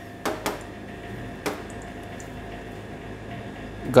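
Steady mechanical hum of a kitchen, with a few short knocks: two close together just after the start and one more about one and a half seconds in.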